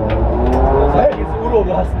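Low, steady rumble of a 1971 Pontiac Trans Am race car's V8 idling while the car stands still, with people talking close by.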